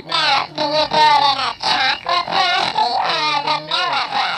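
A voice making wordless, warbling sounds whose pitch slides quickly up and down, in several short strings broken by brief gaps: a comic gibberish reply in place of spoken words.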